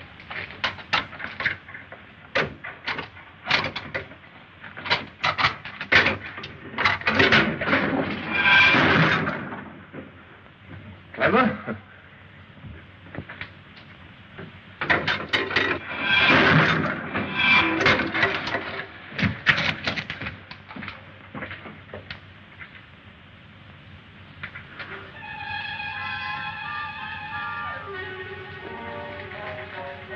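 A run of irregular knocks and thuds with two longer creaking sounds among them. Near the end, film score music comes in with a descending run of notes.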